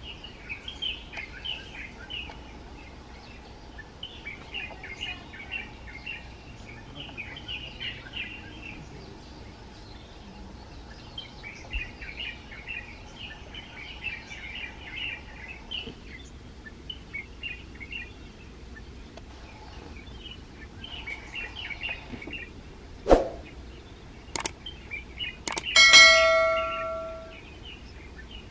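Small birds chirping and twittering in short bursts for most of the clip. Near the end come a few sharp clicks and then a single bell-like ding that rings for about a second and a half, the sound effect of a subscribe-button animation.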